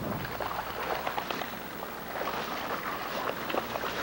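A Newfoundland dog wading through shallow lake water, with a steady run of small splashes.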